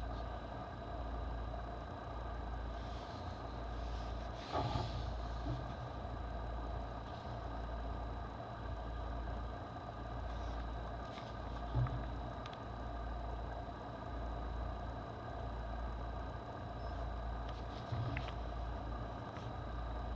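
Paper booklet handled and its pages turned by hand, giving a few brief rustles about four seconds in, near the middle and near the end, over a steady low background hum.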